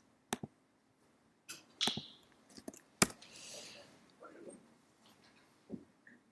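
A few scattered computer clicks from a mouse and keyboard, the sharpest about halfway through, with faint breathy murmur between them.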